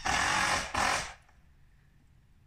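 A power tool running in two short loud bursts: one lasting about three quarters of a second, then after a brief break a second of about a third of a second.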